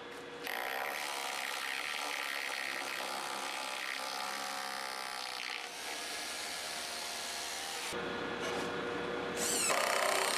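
Bosch Bulldog Xtreme hammer drill running steadily, drilling a 3/16-inch masonry bit into the concrete foundation to take a Tapcon screw. It starts about half a second in. Near the end a louder, different noise cuts in.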